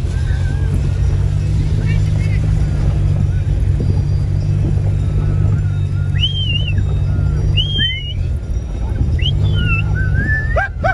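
Steady low rumble of a vehicle driving over grassland, heard from inside the cabin with the window open. A few short high-pitched rising-and-falling calls come through about two, six, eight and nine seconds in.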